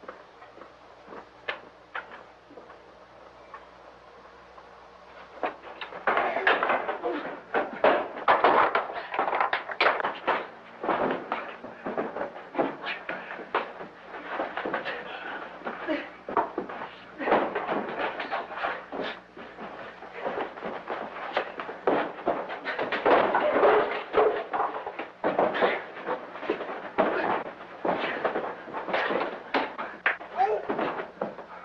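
Fistfight in an old film soundtrack. After a few quiet seconds with scattered knocks, a dense, irregular run of blows, scuffling and crashes begins about six seconds in and keeps on.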